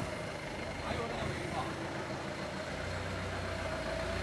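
HELI forklift's engine running as the loaded forklift drives forward; its low engine rumble grows stronger about three seconds in.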